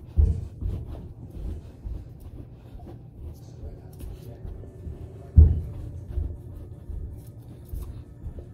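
Dull low thumps of feet and knees on the floor during a mountain-climber exercise, coming irregularly about twice a second, with the heaviest thump about five and a half seconds in.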